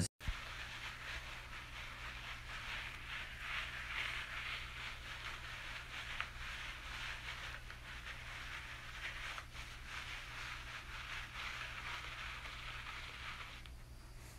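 Hair twist sponge rubbed steadily over short hair to twist it into locks: a continuous scratchy rustle that stops shortly before the end.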